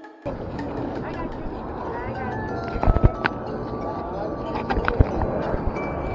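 Outdoor sidewalk ambience on a walking camera: a steady low rumble of wind on the microphone, starting abruptly just after the opening, with a few sharp knocks about three and five seconds in and faint voices in the background.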